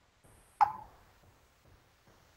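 A single sharp click or knock about half a second in, with a short ringing tail that fades quickly, over faint soft ticks about twice a second.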